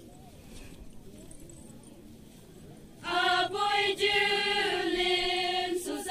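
A group of voices singing a folk song in unison: after about three seconds of quiet, they hold one long, steady note that starts about halfway through, broken briefly near the end.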